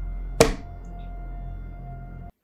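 Dramatic score from a TV drama: a low steady drone under held tones, with one sharp, loud hit about half a second in.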